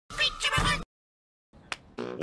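A short, high, wavering cat-like call lasting under a second, followed by a single faint click.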